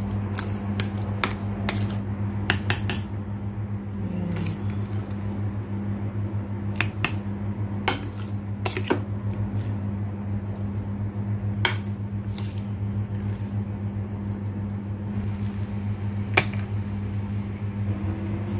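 Metal fork and spoon clinking against a plate and a bowl while mashed avocado is worked and stirred into a milky mixture: irregular sharp clicks over a steady low hum.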